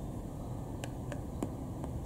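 Steady low background hiss with a few faint, light clicks in the second half, from hands handling a smartphone and a plastic power bank joined by a charging cable.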